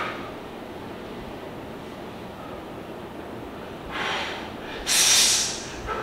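A bodybuilder's hard, forced exhales while holding poses: a short hiss of breath about four seconds in, then a louder, longer one about a second later. It is posing breathing that, in his coach's view, he has to control a little more.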